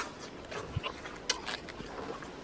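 Close, wet mouth sounds of someone eating: chewing with a scatter of short smacks and clicks.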